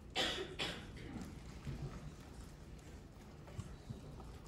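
Two quick coughs in quick succession at the start, then quiet room noise with faint scattered small sounds.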